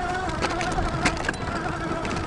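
The 1000 W rear hub motor of a fat-tire electric bike whines steadily under power while the 4-inch fat tyres rumble over bumpy grass. There are two light knocks from the bike going over bumps, about half a second and a second in.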